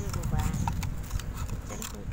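A thin plastic water bottle being cut with scissors: a few sharp snips and crackles of the plastic, over a voice talking.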